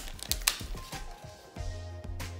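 Thin plastic shrink-wrap crinkling and crackling as it is pulled off a phone box, a quick run of crackles in the first half-second that then dies away, over background music.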